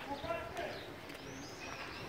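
Street ambience: indistinct voices of people talking nearby, with small bird chirps and faint footsteps on cobblestones.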